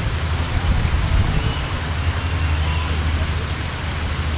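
Steady outdoor background noise: an even hiss over a low rumble, with faint distant voices.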